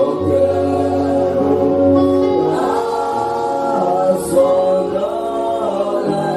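A church congregation singing a slow worship song together, with long held notes, led by a man singing into a microphone.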